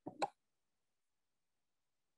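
A short mouth sound from the presenter, lasting about a quarter of a second, then dead silence, as on noise-gated webinar audio.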